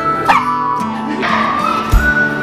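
A small dog barking twice in short yaps, over background music.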